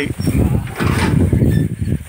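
Steel-pipe livestock gate being unlatched and opened: a dense run of rattling metal knocks.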